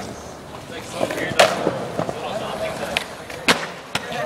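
Skateboard on concrete: two sharp cracks of the board, about a second and a half in and again near the end, with lighter clacks between.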